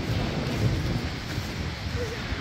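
Wind buffeting the microphone as a low, uneven rumble over a steady outdoor hiss.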